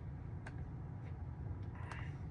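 Two faint clicks from a Tesla's steering-wheel scroll wheel being rolled, about half a second and nearly two seconds in, over a low steady hum.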